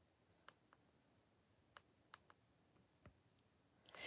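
Near silence with about seven faint, short clicks scattered irregularly through it.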